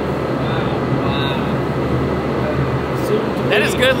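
Industrial pork-slicing conveyor line running: a steady, super loud machine noise with a constant low hum.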